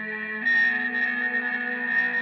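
Electric guitar fed through effects pedals, making sustained droning noise music with a steady high ringing tone. A louder layer comes in about half a second in.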